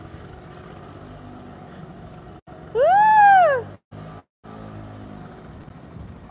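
A 1982 Honda Urban Express moped engine running faintly at a steady pitch. About three seconds in, a person's voice calls out one loud 'ooh' that rises and then falls. The sound drops out completely twice, briefly.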